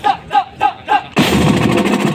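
Marching drumline: sharp pitched hits about three a second, each dropping slightly in pitch, then a little over a second in the full line of snare, tenor and bass drums comes in together, loud and dense.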